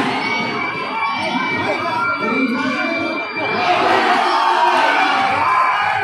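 A large crowd of basketball spectators shouting and cheering, growing louder a little past halfway through.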